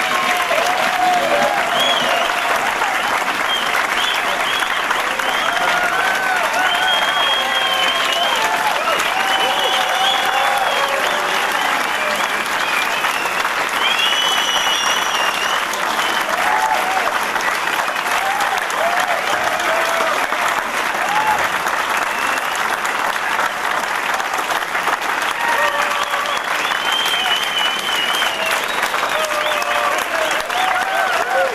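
Audience applauding steadily at the end of a live blues song, with cheering voices calling out over the clapping.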